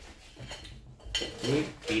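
Spoons clinking and scraping against ceramic plates while people eat, with a sharper clink about a second in. A voice starts speaking just after.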